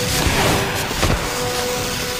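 Force lightning sound effect: a continuous electric crackling buzz with several sharp zaps, the loudest near the start and about a second in.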